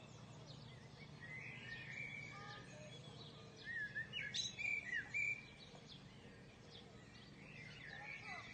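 Several birds chirping and calling over a faint steady low hum, the calls busiest and loudest around the middle.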